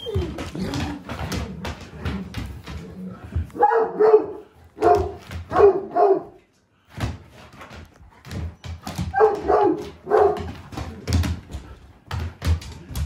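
Great Pyrenees barking in short bunches during play: several barks a few seconds in and a few more near the end. Between them come the patter and knocks of its paws on a wooden floor.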